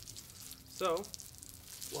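Water running and spattering out of the open bleed valves on a backflow test kit's differential pressure gauge, a steady high hiss with fine spatter. Both test-cock hoses are being bled to purge the air, and the stream now runs steady with no air in it.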